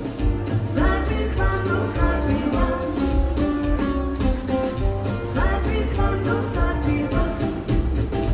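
Live band playing with a steady beat: upright bass, electric guitar and drums, with a woman singing the melody.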